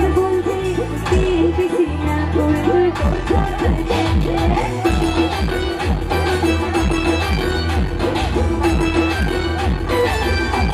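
Live band playing an upbeat pop song: a held keyboard note over a pulsing bass, with a steady drum beat coming in about three seconds in.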